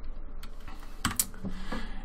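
A few short clicks of computer keyboard keys being pressed, about a second in and again near the end: keystrokes advancing the presentation to the next slide.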